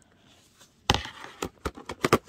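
Black plastic meal-container lid being pushed and knocked against its tray: one sharp knock about a second in, then a few lighter clicks. The lid is not snapping shut because its upper part is smaller than the lower part.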